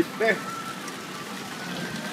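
A person's short vocal sound just after the start, then steady hissing background noise for the rest of the moment.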